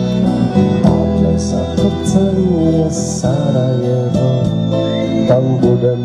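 Live band playing an instrumental passage: strummed acoustic guitar with electric guitar and bass, steady hand-drum beats from a cajon, and a bending melodic lead line over them.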